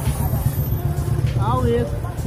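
Motorcycle being ridden, its engine running as a steady low rumble mixed with wind on the microphone. A person's voice cuts in briefly a little past halfway.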